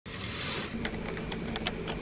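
Light, irregular clicks and taps, several a second, as of small objects being handled, over a low steady room hum, after a brief soft hiss at the start.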